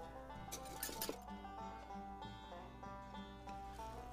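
Quiet background music made of held notes that change pitch now and then, with a couple of faint clicks about half a second and a second in.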